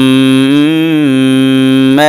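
A man reciting Quranic Arabic, holding one long vowel as a drawn-out madd in tajweed style. The pitch stays steady apart from a slight rise and fall near the middle.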